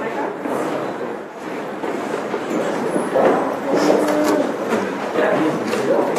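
Indistinct chatter of several people in a crowded room, over a steady background hiss, with no single clear voice.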